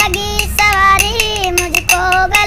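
A boy singing a Hindi song in a high, sustained voice, keeping time with sharp clicks from a pair of flat hand-held clappers in a steady rhythm.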